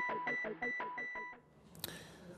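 Electronic jingle of a TV show's logo bumper, a fast run of short beeping synth notes at about five a second that stops about two-thirds of the way through, leaving faint room tone and a single click.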